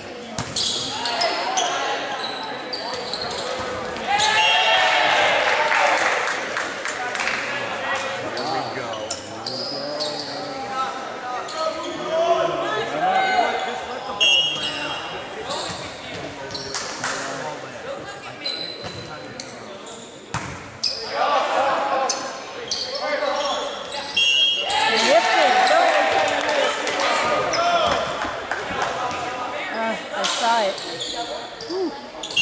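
Volleyball rally in a gymnasium: the ball struck and bouncing off the hardwood floor in repeated sharp hits, echoing through the hall, with players and spectators shouting in loud bursts twice.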